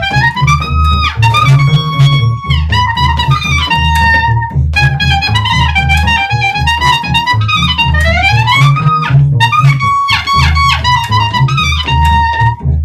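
Clarinet playing a melody with notes that slide up in pitch, the longest slide about eight seconds in, over a double bass accompaniment.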